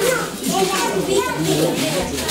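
Indistinct overlapping voices of a group of adults and children talking and calling out, with no clear words.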